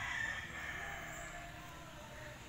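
A rooster crowing faintly, its long held call fading out about a second in.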